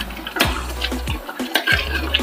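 A ladle stirring and scraping through thick curry gravy in an aluminium pot, giving short clicks against the pot, with background music.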